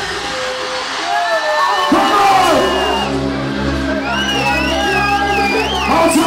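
Hardcore rave music played loud over a club sound system. The deep bass drops out in a short breakdown, then comes back in about two seconds in, and a high wavering melodic line enters near the end.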